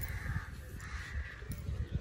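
Crows cawing faintly in the background, twice, over a low uneven rumble.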